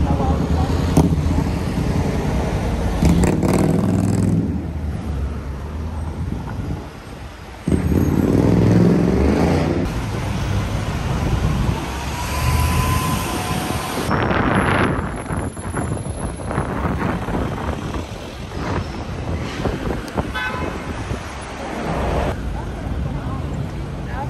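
Traffic on a busy city street: vehicles passing close by with a steady engine and tyre rumble that swells and eases as they go.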